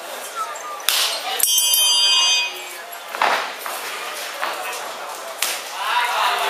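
A round-start signal for a kickboxing bout: a loud, bright ringing tone held for about a second and then cut off short, with hall crowd voices around it.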